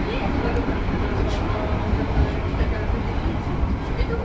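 Steady rumble of a passenger train carriage in motion, heard from inside, with voices faintly in the background.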